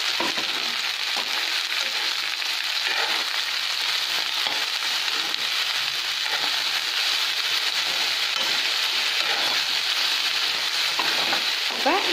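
Sliced okra frying in hot oil in a kadai, a steady sizzling hiss, with light scrapes of a spoon stirring it now and then.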